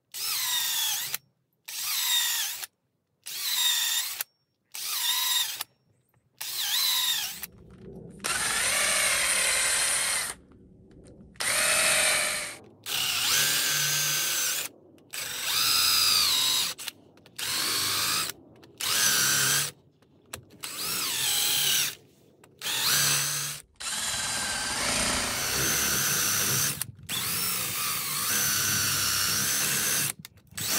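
Stanley cordless drill boring into the end grain of a log with a long spiral wood bit. It starts with a string of short trigger bursts, about one a second, each with a rising whine as the motor spins up. About seven seconds in it settles into longer runs broken by brief stops as the bit cuts deeper.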